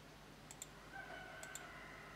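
Computer mouse button clicking: two pairs of quick, faint clicks, about a second apart.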